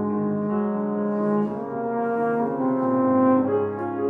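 French horn playing a slow classical solo in long held notes, with grand piano accompaniment, swelling louder near the end.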